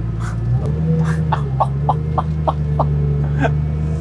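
Koenigsegg Regera's twin-turbo V8 running at low speed in the open cabin, its drone stepping up in pitch about half a second in. Over it, a man laughs in short bursts, about three a second.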